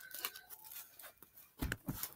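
A deck of playing cards being handled: faint light clicks and flicks of the cards, with a duller knock near the end.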